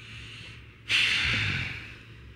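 A woman's loud, noisy breath close to the microphone about a second in, lasting under a second, as she cries.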